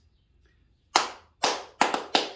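Hand claps in a quick series, starting about a second in, counting out six beats that stand in for the drum beats marking a group of moon phases.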